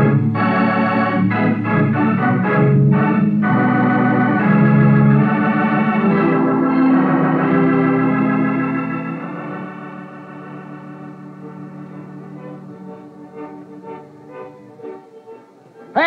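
Organ music bridge between scenes of a radio drama: a few short, punchy chords, then held chords that sink to a soft, sustained close over the last several seconds.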